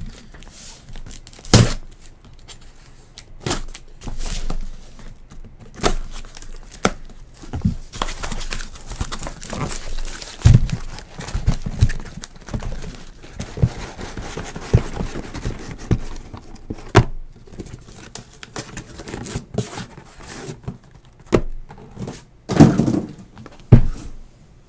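A cardboard shipping case being opened and emptied by hand: cardboard rustling, scraping and tearing, with a long stretch of it in the middle, and many sharp knocks and thumps as the sealed card boxes inside are pulled out and set down in stacks.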